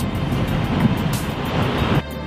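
A steady rushing noise with no speech in it, cut off suddenly at the end.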